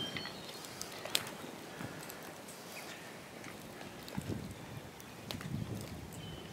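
Faint, quiet crackle of a small wood fire, with one sharper pop about a second in. A few soft scrapes of hands packing loose dirt come in the second half.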